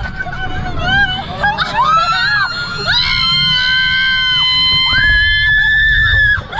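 Two women screaming and laughing on an amusement park ride, with short shrieks at first and then long held screams at two different pitches from about halfway through. Wind rumbles on the microphone underneath.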